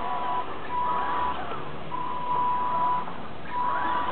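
Electric motor and speed controller of an RC scale Land Rover Defender D90 whining at one steady high pitch in on-and-off spurts as the truck creeps over wet paving. The whine rises briefly when the motor spins up, about a second in and again near the end.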